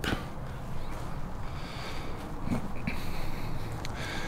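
Steady low outdoor background rumble, the sound of wind on the microphone, with a few faint clicks.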